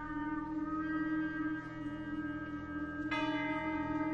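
Contemporary orchestral music: the orchestra holds sustained chords over a steady low note. About three seconds in, a new, brighter chord enters with a sudden attack.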